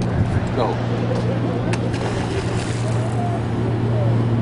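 Steady low engine hum over a haze of wind and sea noise, with one short tick a little under two seconds in.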